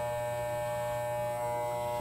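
Corded electric hair clippers running with a steady buzz while trimming hair at the nape of the neck.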